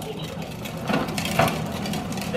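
Hard plastic wheels of a toddler's ride-on toy car rolling over a concrete driveway as it is pushed along, a steady low rattle with a few small knocks.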